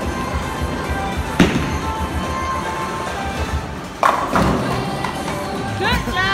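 A single thud about a second and a half in, then bowling pins crashing as a bowling ball hits them about four seconds in, over background music.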